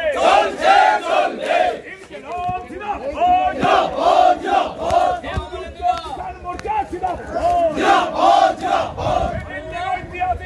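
A crowd of protesters chanting slogans in unison, loud, in rhythmic groups of shouted syllables that repeat every few seconds.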